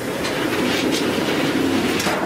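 AAC thermoformer's clamped sheet frame travelling into the oven on the start command: a steady mechanical rattling rumble that lasts about two seconds and then stops.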